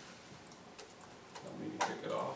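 Quiet room tone with a few light, irregular clicks and taps; the loudest comes near the end.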